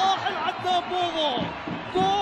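A male football commentator's voice, excitedly exclaiming in the middle of celebrating a goal.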